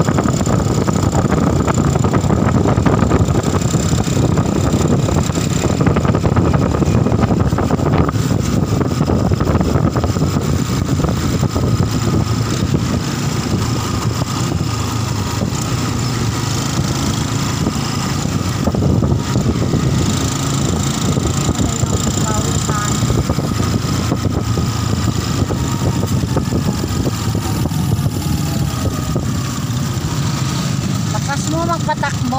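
Steady engine and road noise of a moving vehicle, heard from on board while it travels along a paved road.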